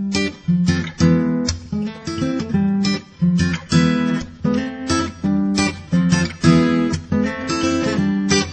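Background music with no singing: an acoustic guitar strumming chords in a steady rhythm, about two strokes a second.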